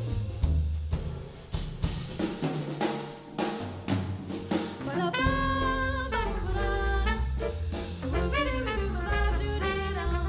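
Live jazz combo playing a swing tune: the drum kit leads for the first few seconds with snare and cymbal strokes, then about five seconds in the trumpet and the rest of the band, with electric bass, come back in.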